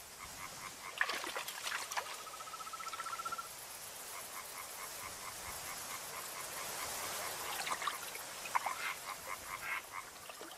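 Frogs croaking in a reed marsh: rhythmic pulsed calls throughout, with a rapid, slightly rising trill from about two to three and a half seconds in and a few sharper calls, over a steady high hiss.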